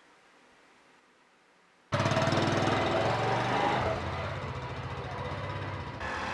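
Near silence, then about two seconds in, a small motorcycle engine cuts in suddenly, running with a rapid, even putter as the bike rides away.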